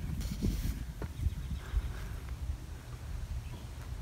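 A few short hollow knocks as a child's shoes climb on the steel track and deck of an old John Deere 450C crawler loader whose engine is not running, under a low rumble of wind on the microphone.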